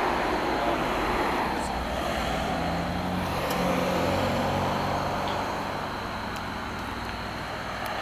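Road traffic passing on the roadway, a steady rush of tyre and engine noise that swells and fades as cars go by.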